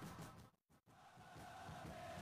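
Near silence: faint background sound that cuts out completely for a moment about half a second in, then returns faint with a thin steady tone.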